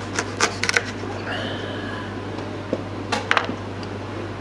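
Knife cutting through a rock-hard frozen mackerel behind the head: a few sharp cracks and crunches in the first second and again after about three seconds, over a steady low hum.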